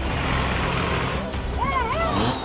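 Engine of a small farm tractor running steadily as it drives along a road. Near the end a voice calls out in a few rising and falling cries.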